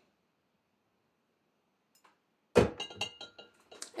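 A swing-top glass bottle set down among other glass bottles on a tray: one sharp clink with a short ring about two and a half seconds in, followed by a few lighter clinks.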